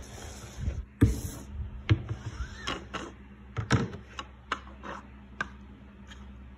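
Toys and objects being handled and set down on a tabletop: a string of irregular knocks and clicks, among them a plastic building block placed on a board book.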